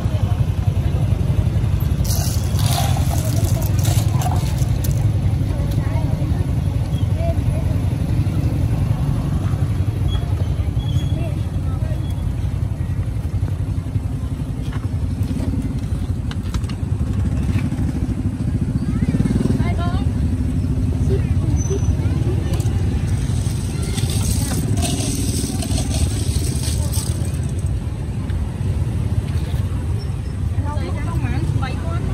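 Busy outdoor street-market ambience: a steady low rumble of traffic with people talking in the background.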